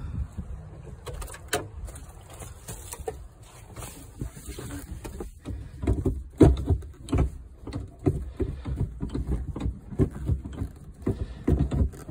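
Gear lever and shift linkage of a 1985 Volkswagen Cabriolet's five-speed manual being rowed back and forth through the gears, a quick series of clicks and clunks, busiest from about halfway on. The upper linkage has just been tightened with a makeshift bushing and washer; the lower linkage bushings are still worn.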